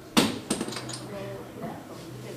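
A sharp knock about a quarter-second in, then a second knock and a few lighter clicks within the next half second, over faint low voices.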